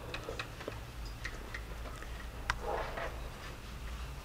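Scattered light clicks and taps of writing in a quiet room over a low hum, with one sharper click about two and a half seconds in.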